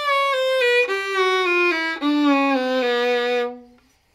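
Solo fiddle playing a bluegrass lick over a G chord: a descending run of bowed single notes stepping down across the strings. It ends on a held low note that stops about three and a half seconds in.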